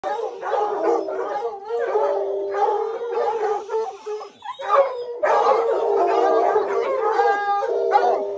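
A pack of foxhounds baying together, several long howling calls overlapping one another, with a short lull about four seconds in.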